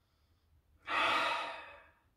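A man's single audible breath through the nose as he smells a glass of beer. It lasts about a second, starting suddenly about a second in and fading away.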